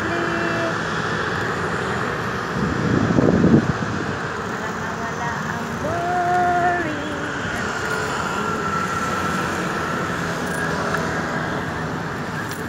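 Steady road traffic noise from a busy street, with a louder low rush about three seconds in and a short held tone about six seconds in.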